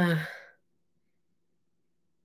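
A woman's short voiced sigh, falling in pitch and lasting about half a second, followed by near silence.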